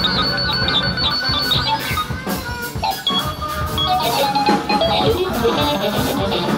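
Live band playing dense, loud experimental music: sustained keyboard tones and guitar over rapid percussive hits, thinning out briefly about three seconds in.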